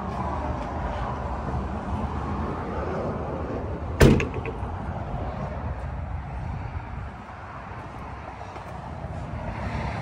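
A Ford Escape's rear liftgate shut once with a loud thump about four seconds in, over steady outdoor background noise that drops a little later on.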